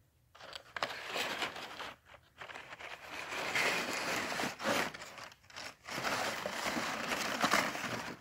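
Crumpled paper packing rustling and crinkling as hands dig through a cardboard shipping box, in several long stretches broken by short pauses.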